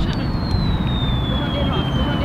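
A thin whistle sliding slowly down in pitch, a comic falling sound effect for a dropped coin, over a steady low rumble of city traffic.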